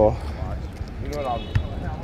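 Steady low street rumble with a man's voice briefly heard just past a second in, and a single sharp knock about one and a half seconds in.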